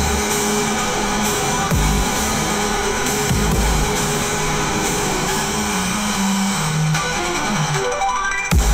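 AI-generated instrumental electronic music with heavy bass notes under a dense, steady texture. Near the end a run of notes steps down in pitch.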